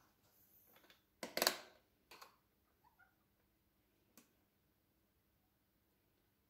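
Handling noise from a plastic-cased analogue continuity tester: one short clack and rustle about a second in, then a couple of faint clicks as its rotary selector is turned to the battery-check setting.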